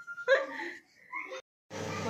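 Short, broken bits of a person's voice with a thin held tone among them, then an abrupt cut to silence, followed by a low steady room hum.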